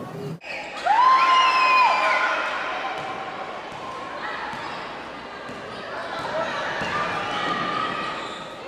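Indoor basketball game: a ball bouncing on a hardwood court amid voices and crowd noise echoing in the gym, with a loud held shout or squeak lasting about a second near the start.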